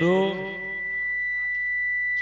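A steady, high-pitched electronic tone runs unbroken. During the first moment the echoing tail of a man's word through a PA system sounds over it.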